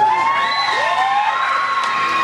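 Children shrieking and cheering: a few rising squeals at the start, then one long, high, held scream.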